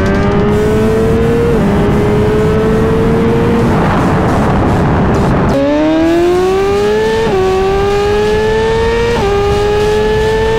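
Inline-four sportbike engine accelerating flat out, its pitch climbing and dropping back with a quick upshift every second or two, with wind rush growing loud midway. About five and a half seconds in the pitch falls suddenly low and climbs through the gears again, with two more upshifts.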